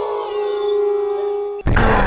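Eerie held electronic tone with faint gliding overtones, a spooky haunted-house sound effect. About one and a half seconds in it gives way to a sudden loud, noisy burst.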